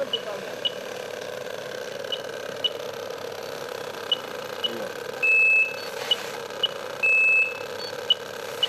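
Steady engine hum of machinery running at a street decontamination station. Over it are electronic beeps: pairs of short high beeps half a second apart, repeating every two seconds. From about five seconds in, a longer beep also sounds every couple of seconds.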